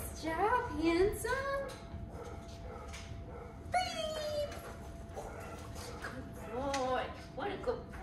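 A dog giving short yips and whines during play, mixed with a woman's high-pitched excited praise, in three short flurries.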